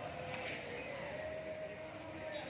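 A motor vehicle engine running at a distance: a faint steady hum over open-air background noise.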